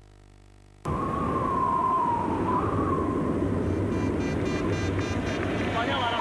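A low steady hum for the first second, where the tape recording cuts between ads. Then a steady rushing outdoor noise begins, with a faint wavering whistle over it.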